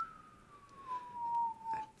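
A person whistling one long note that slides slowly down in pitch.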